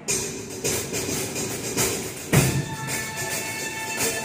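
Drum kits playing as music starts suddenly, with cymbal and drum hits over steady pitched backing music; the loudest hit, a cymbal with bass drum, comes about two and a half seconds in.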